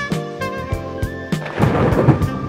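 Upbeat intro music with horn-like lines, then about a second and a half in a loud rumbling crash like a thunderclap sound effect hits over the music.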